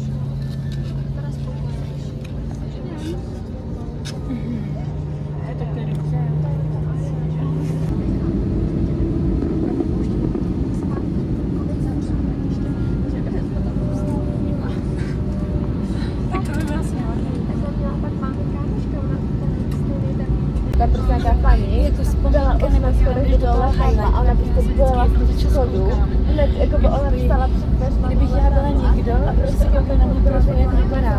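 Cabin sound of an Airbus A321neo with Pratt & Whitney geared turbofans running, heard from inside during engine start and taxi. A steady low hum suddenly gives way, about eight seconds in, to a fuller, louder steady noise. From about twenty seconds in, a heavy low rumble builds as the airliner rolls along the taxiway.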